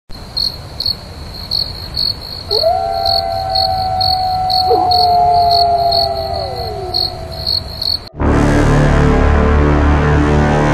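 Crickets chirping steadily, about two chirps a second, while a wolf howls a long held note that rises, holds and falls away, joined partway through by a second, lower howl. About eight seconds in the crickets and howls cut off abruptly and loud, dark, low horror music begins.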